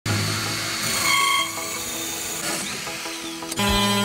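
Cordless drill running a hole saw into the wooden top of a nightstand, under background music. About three and a half seconds in it changes abruptly to the steady buzz of an oscillating multi-tool.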